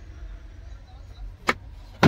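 Sharp plastic clicks of a truck cab's sun visor and its vanity mirror being handled and closed: one about a second and a half in and a louder one at the end, over a low steady rumble.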